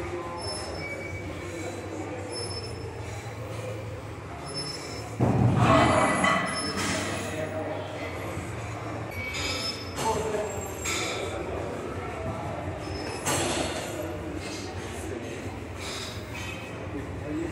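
Gym noise during a heavy set on a plate-loaded chest press machine. It is loudest in a burst about five seconds in, with shorter bursts near ten and thirteen seconds.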